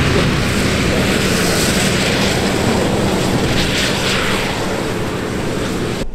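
Heavy-duty pickup truck's engine held at high revs in four-wheel drive, its tyres spinning and churning through mud as it does donuts. A loud, steady rush with a low engine hum underneath.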